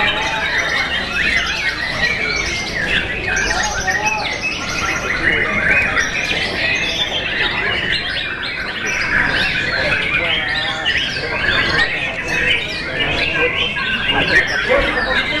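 White-rumped shamas singing in a dense, continuous chorus of whistles and rapid chattering, with people's voices underneath.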